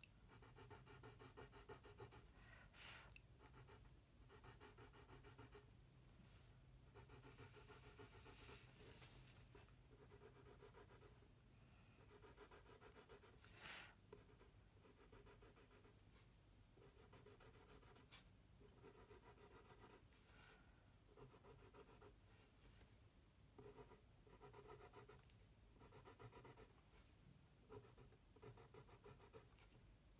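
Coloured pencil scratching faintly on toothy mixed-media paper in quick runs of small circular strokes, with two brief louder scuffs about three and fourteen seconds in.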